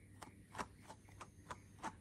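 Small pet slicker brush stroked through a Jersey Wooly rabbit's long fur under its chin: faint quick brush strokes, about three a second, working through the fur to check it is free of mats.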